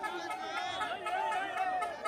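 Many people talking and calling out at once: overlapping chatter from a close group of voices.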